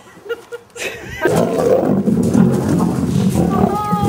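Several lions fighting over a big snake, their loud growls starting about a second in and running on continuously.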